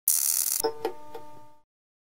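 Intro jingle sound effect: a short, loud hissing whoosh, then three quick chime notes that ring briefly and fade out.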